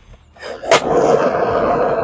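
Skateboard wheels rolling on concrete, a steady rumble that begins about half a second in, with one sharp clack of the board under foot shortly after.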